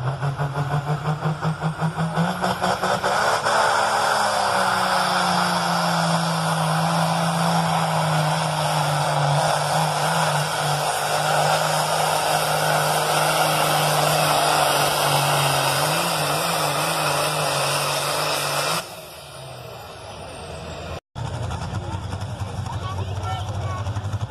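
Farm-stock pulling tractor's diesel engine under full load hauling a pulling sled: the note climbs as it launches, then slowly sags in pitch as the sled's weight builds, and drops off suddenly near the end of the pull. A quieter engine then runs with an even pulse.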